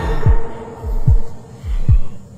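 Heartbeat sound effect on the soundtrack: deep thumps that fall in pitch, each a quick double beat, three beats about 0.8 seconds apart, over a fading held tone.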